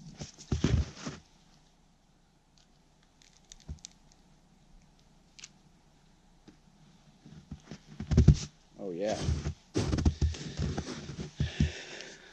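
A horseshoe (tinder) fungus being worked loose from a tree trunk by hand: scattered faint clicks, then from about eight seconds in a run of knocks and scrapes with a short grunt of effort.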